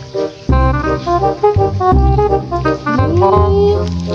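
Background music: a melody over a steady, heavy bass beat, with one note sliding up and held near the end.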